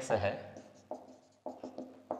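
Marker pen writing on a whiteboard: a few short separate strokes as an equation is written out.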